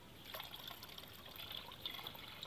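Water poured slowly from a bucket into a tub of standing water, a faint trickle and splash.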